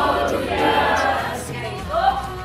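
Music with a group of voices singing together, choir-like, running without a break.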